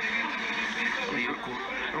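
Voices talking, heard through a television's speaker.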